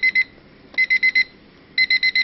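Digital timer alarm beeping: short bursts of four or five quick high-pitched beeps, repeating about once a second. It signals that the one-minute test period has run out.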